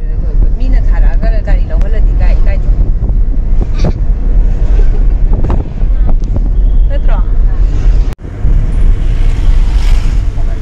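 Steady low road and engine rumble inside a moving car's cabin, with voices talking over it. The sound cuts out abruptly for a moment about eight seconds in, then the cabin rumble resumes.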